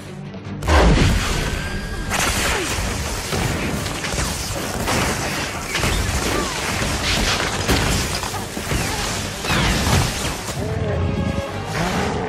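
Film battle sound mix: music under a dense run of crashes, booms and whooshes, with a heavy blast about a second in.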